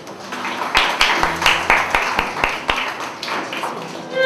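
Audience applauding, starting about half a second in and dying away near the end, with a string of sharp claps close by.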